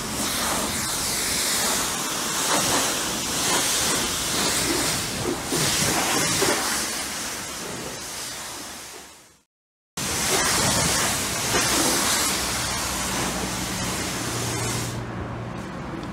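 High-pressure water spray hissing from a pressure-washer wand as it washes a car. It fades out about nine seconds in, stops for half a second, then resumes.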